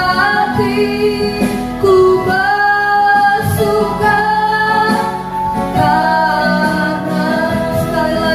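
Women singing an Indonesian worship song in Indonesian, with electronic keyboard accompaniment and sustained, sliding sung notes.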